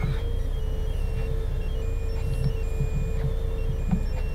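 Doosan 4.5-ton forklift's diesel engine running steadily while the forklift travels, heard inside the cab as a low rumble with a steady hum over it.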